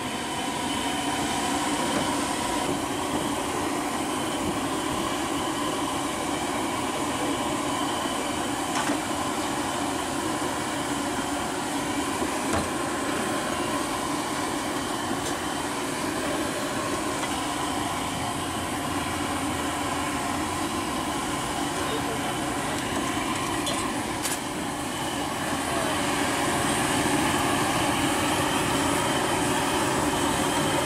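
Steady hiss and hum of background noise with faint voices, no single event standing out; it grows a little louder near the end.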